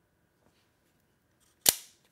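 Cobratec Large FS-X out-the-front knife's spring-driven tanto blade snapping back into the handle: one sharp, loud snap near the end, with a faint click of the slider before it.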